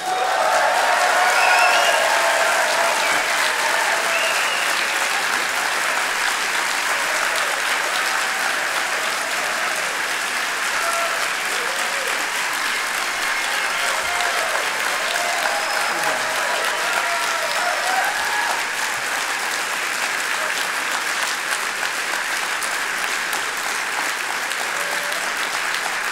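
Large audience applauding, with some cheers and calls over the clapping. It is loudest in the first couple of seconds, then holds steady.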